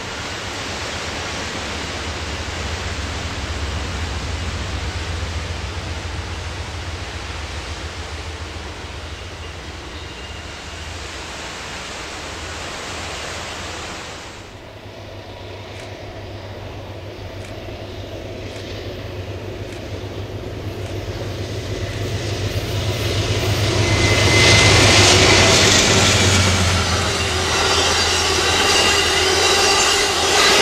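Amtrak Coast Starlight passenger train running by behind its diesel locomotives, heard as a low engine drone under a steady rush. The sound drops off suddenly about halfway through, then builds again as the train approaches and its bilevel Superliner cars roll past close by. A thin wheel squeal comes in near the loudest point.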